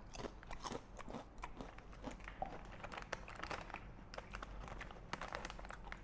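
Close-up crunching of a potato chip being bitten and chewed, a run of faint, irregular crunches.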